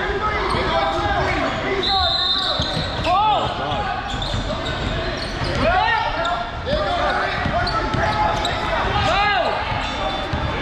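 Indoor basketball game: a basketball bouncing on a hardwood court amid players' and spectators' voices, all echoing in a large gym.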